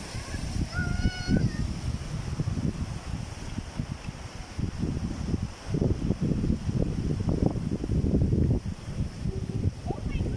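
Wind buffeting the microphone in uneven gusts, heavier in the second half. A brief high tone is heard about a second in.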